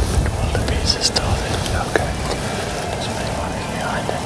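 Hushed whispering between two men, over a steady low rumble of background noise.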